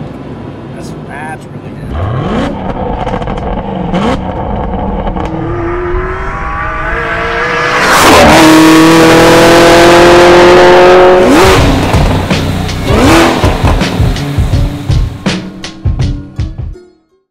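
Supercharged stroker V8 of a tuned Camaro ZL1 1LE revving hard under acceleration, its pitch climbing again and again as it pulls through the gears, loudest and held high about eight to eleven seconds in.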